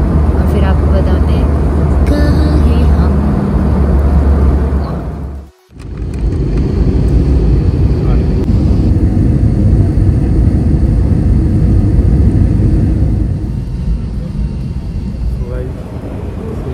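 Steady airliner cabin noise, a low rumble of engines and airflow, broken by a sudden brief dropout about five and a half seconds in and easing slightly near the end.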